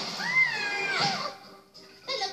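A cartoon character's high, drawn-out cry gliding up and down in pitch as she falls down a hole, played through a TV speaker and fading out about a second and a half in.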